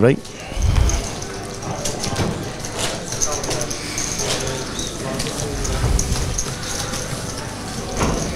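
Poker cardroom ambience: a steady murmur of players' voices with frequent short clicks of poker chips being handled.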